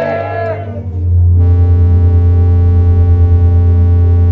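A crowd's shouted chant dies away, and from about a second in a loud held musical drone chord sounds with a slight pulsing, steady in pitch.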